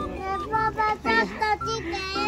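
A song with a high sung melody, moving through short held notes.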